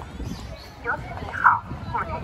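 Short snatches of talk from passers-by in a crowd, the loudest about one and a half seconds in, over steady low background noise.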